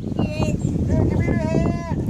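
A child's high voice: a brief wavering squeal, then about a second in a long held call, over low wind rumble on the microphone.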